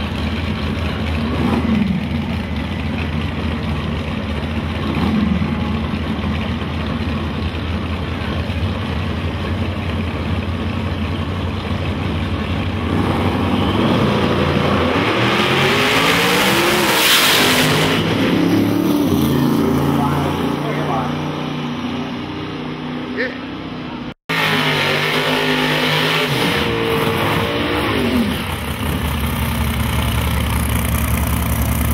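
Small-block V8 drag-race cars idling at the starting line with a couple of brief throttle blips. About 15 s in they launch at full throttle, with the engine pitch rising as they pull away. After an abrupt cut near 24 s, engines rev again.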